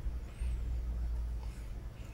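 A steady low hum, with faint soft swishing from a paintbrush stirring and scrubbing PCBs in a tray of etchant.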